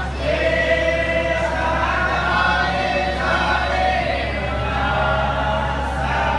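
A group of voices singing a Hindu devotional hymn in unison, the notes drawn out and sliding, over a steady low hum.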